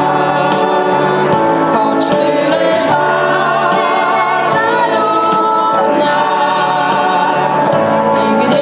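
A girl and an older man singing a Christmas carol together into a microphone, amplified over a PA.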